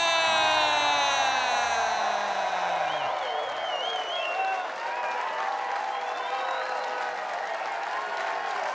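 Comedy club audience clapping and cheering, with a few high whoops about three seconds in. Over the first three seconds an announcer's drawn-out shout of the comedian's name falls in pitch and trails off over the applause.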